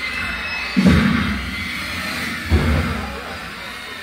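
Two loud, low booming hits from the band's stage gear, one about a second in and another about a second and a half later, each ringing out for about a second over a steady background hum.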